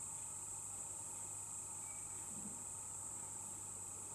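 A steady, high-pitched insect chorus of crickets, unbroken throughout, over a faint low steady hum.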